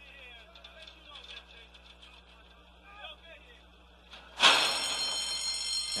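Racetrack starting-gate bell ringing loud and steady from about four and a half seconds in, as the gates open and the horses break. Before it, a faint murmur of crowd and track background.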